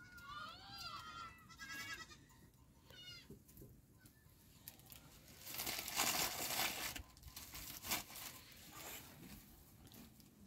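Sheep bleating several times in the first few seconds, wavering calls. Then a plastic bag crinkles loudly for about a second and a half in the middle, with a shorter rustle a little later.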